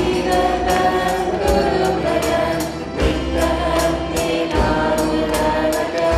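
Live band performance: a woman singing into a microphone over electric guitar, with a tambourine struck on a steady beat, about two to three strikes a second.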